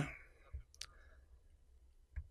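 A man's close-miked voice trails off, then a pause with a faint low thump and one short, sharp click, most likely from his mouth, before near silence.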